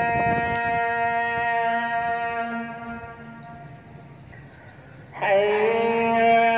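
Azan, the Muslim call to prayer, sung by a muezzin: one long held note that fades away after about three seconds, then the next phrase starts loudly on a rising note about five seconds in.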